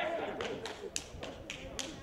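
Solo stepping: sharp hand claps and body slaps in a quick even rhythm, about four strikes a second, over a low murmur of crowd voices.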